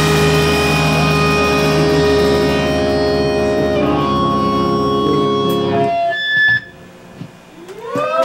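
Live rock band's electric guitars and bass letting a held chord ring out at the end of a song, then cut off sharply about six and a half seconds in, leaving a short quiet gap.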